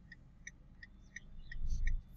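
A steady series of short high-pitched pips, about three a second, over the low rumble of a moving car that grows louder near the end.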